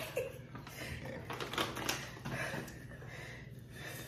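Faint rustling and crinkling of a small folded paper slip being drawn from a plastic bag and unfolded by hand, in a few short scattered crackles.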